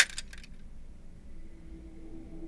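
Wire coat hangers clinking and rattling against each other on a closet rail: a short burst of metallic jingles in the first half-second.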